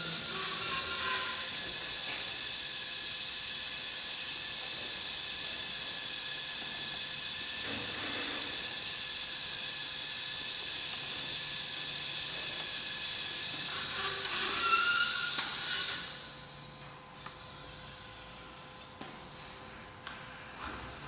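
Small wheeled kit robot's geared electric drive motors whining steadily with a high hiss while it drives. The sound stops sharply about 16 seconds in, just after a brief rising whine, and a much quieter noise remains.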